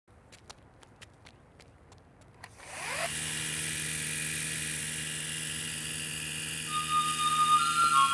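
Small electric motor of a toy radio-controlled helicopter spinning up about two and a half seconds in, rising quickly to a steady whine that holds. A few faint, evenly spaced clicks come before it, and music tones come in near the end.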